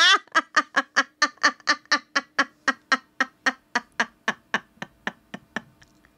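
A woman's long laughing fit: a steady run of staccato 'ha' pulses, about four a second. It slowly fades and spreads out, then stops near the end.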